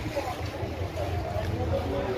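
Steady low rumble of background noise, with faint, distant voices murmuring.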